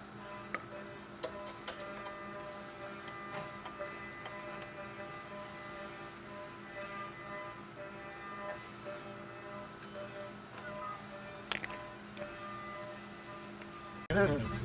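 Soft background music, steady and low in level, with scattered light clicks and taps from an oil filter being handled and set in a bench vise; the sharpest click comes about eleven and a half seconds in.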